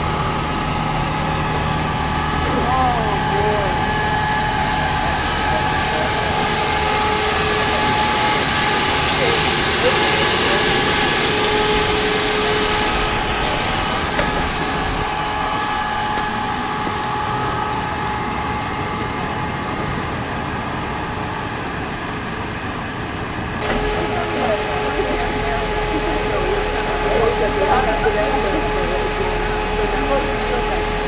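A vehicle engine idling, a steady hum under faint indistinct voices. The sound changes suddenly about three quarters of the way through to a different steady hum, with faint talk.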